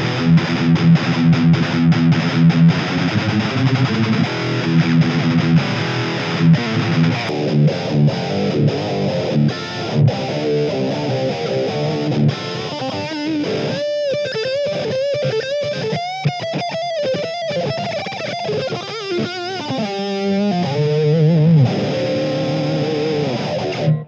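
Electric guitar played through a Blackstar ID:Core stereo combo amplifier: a distorted, chugging riff for the first half. From about halfway it switches to a passage on the amp's OD2 overdrive channel with phaser, analogue delay and spring reverb, the notes swirling and sweeping. It cuts off abruptly at the end.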